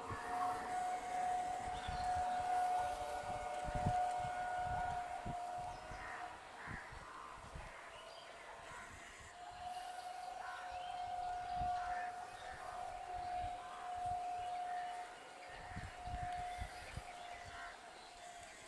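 MEMU electric train's horn held in two long, steady blasts, about six seconds and then about eight seconds, over a low, uneven rumble.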